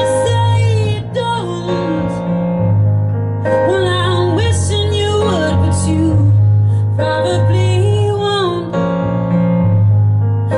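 A woman singing a slow song live over sustained keyboard chords. Her voice comes in phrases with short breaks, while the held low chords carry on underneath.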